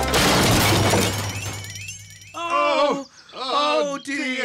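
Cartoon crash sound effect of two unicycles colliding off-screen: a sudden clattering smash at the start that dies away over about two seconds. It is followed by three short wobbling vocal sounds.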